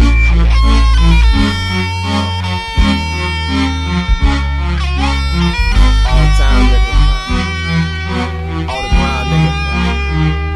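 Instrumental hip-hop music with no vocals: deep, sustained bass notes changing every second or two under a pitched melodic line.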